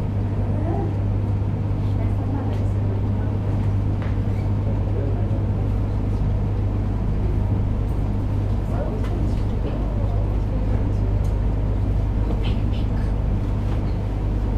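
A steady low hum with faint, indistinct voices of people in the background and a few light clicks.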